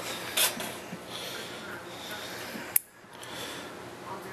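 A light being switched off: one sharp switch click near the end, after which the steady background noise briefly drops away, with a short handling rustle about half a second in.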